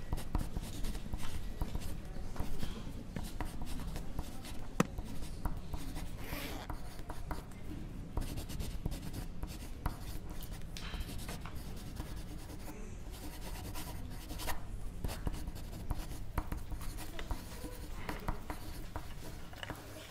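Pencil writing on paper, close to the microphone: a steady stream of short, irregular scratching strokes.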